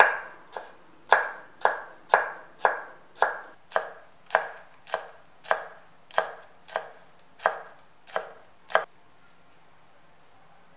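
Large kitchen knife chopping fresh spinach on a wooden cutting board: about sixteen even knocks of the blade on the board, roughly two a second, stopping shortly before the end.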